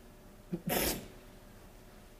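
A man's stifled burst of laughter: one short, sharp puff of breath about two-thirds of a second in, with quiet around it.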